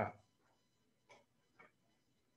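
Two faint, short clicks about half a second apart, just after a spoken word trails off.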